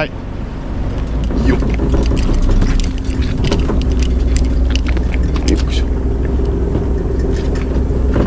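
Small ferry boat's engine running steadily at low speed while it comes alongside a breakwater, with scattered clicks and knocks over the low engine sound.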